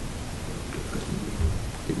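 Steady hiss with a low rumble underneath: the background noise of a meeting room picked up through the table microphones, with no voice.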